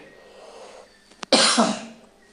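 A man's single cough about a second and a half in, preceded by a brief click.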